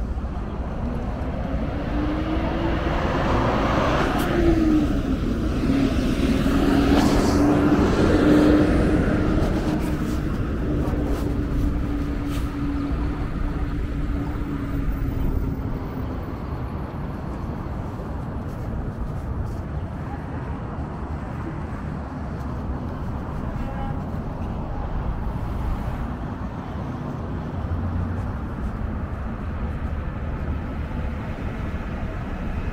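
City street traffic: motor vehicles passing on the roadway, loudest over the first third. One engine hum rises in pitch over the first few seconds, then holds steady and fades out about halfway through, over a constant low traffic rumble.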